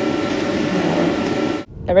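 Heavily amplified room recording: a loud steady hiss with a faint wavering voice-like sound beneath it, put forward as an elderly woman's voice saying 'help'. It cuts off suddenly near the end.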